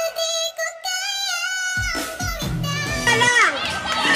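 Music: a song with a high singing voice. The backing is thin at first, and a lower accompaniment comes in about two seconds in.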